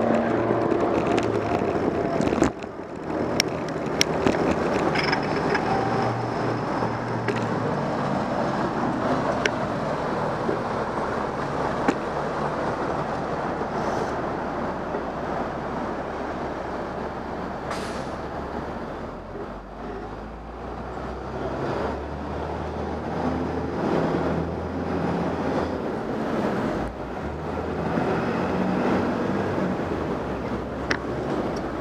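City street traffic: vehicle engines running and passing, a steady low hum of motors with road noise and occasional clicks.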